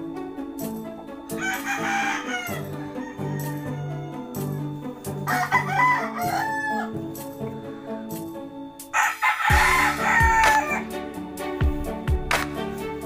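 Rooster crowing three times, the last crow the loudest, over background music with a steady beat.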